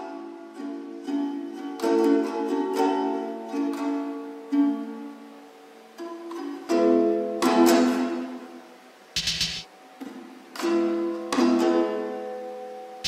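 Instrumental music with no singing: a plucked-string instrument playing chords, each with a sharp attack that rings on. About nine seconds in there is a short, noisy percussive hit.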